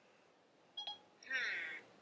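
A short electronic beep from the phone about a second in, typical of Siri's listening tone, then a brief faint pitched voice-like sound.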